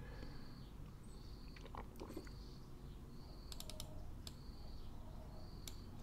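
Faint scattered clicks of a computer mouse and keyboard, with a quick run of about four clicks a little past the middle, over a low steady hum.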